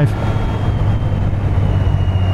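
Motorcycle engine running at a steady cruise, with wind and road noise, heard from the rider's seat: an even, low hum.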